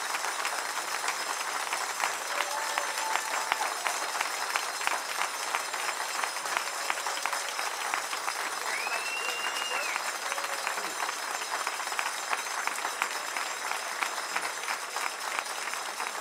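A large room of people applauding together in sustained clapping that keeps on at an even level throughout.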